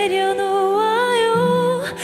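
A woman singing a slow Korean pop ballad live into a microphone, holding long notes with a gentle waver over a soft, steady accompaniment; the line rises about halfway through and breaks for a breath near the end.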